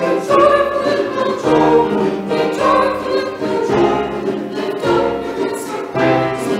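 Church choir singing a hymn anthem in parts with piano accompaniment, the chords changing about every second.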